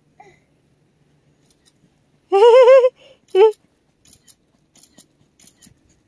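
Baby's excited squeal, a high wavering cry of about half a second, followed about a second later by a shorter one, then a few faint light ticks.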